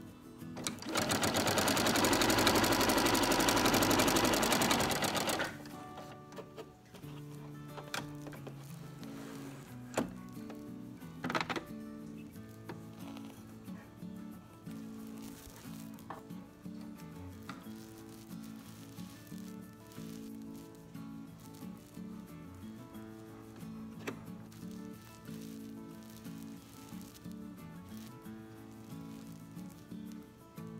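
Husqvarna Viking sewing machine stitching a seam at speed through fabric and batting for about five seconds, then stopping. Background music follows, with a few sharp clicks a few seconds later.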